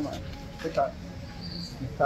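A man's voice saying a short word in a tense exchange, over a low steady hum, with a faint brief high-pitched chirp about one and a half seconds in.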